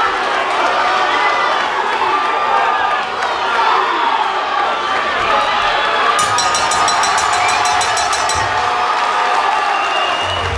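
Fight crowd shouting and cheering, many voices overlapping at a steady loud level, as a fighter works a choke on the ground.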